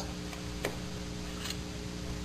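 Two faint clicks of playing cards being handled as three folded cards are opened out, over a steady low hum.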